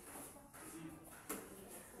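Quiet hall ambience with faint, distant voices and one light tap a little past the middle.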